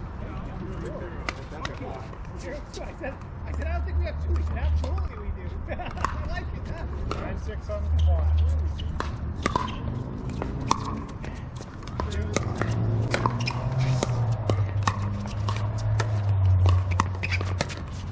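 Pickleball paddles striking a hard plastic ball: many sharp, irregular pops and clicks from rallies on this court and the neighbouring courts. An intermittent low rumble runs underneath.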